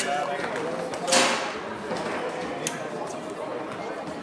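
Voices of players and spectators talking in a large hall, with one sharp knock about a second in and a fainter click later.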